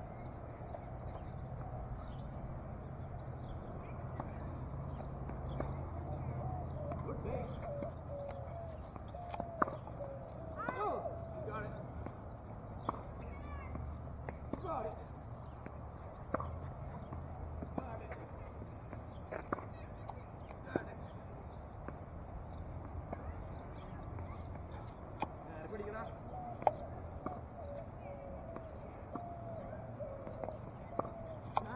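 Tennis balls being struck by rackets and bouncing on a hard court: sharp single knocks at irregular intervals of one to three seconds, mostly from about ten seconds in. Underneath is a steady low outdoor rumble with faint voices.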